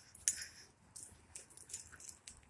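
Faint, scattered light clinks and rustles, the jingle of keys carried in hand or pocket while walking.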